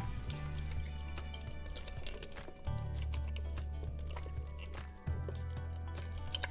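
Background music with sustained bass notes that change about every two to three seconds, under steady higher tones and scattered light clicks.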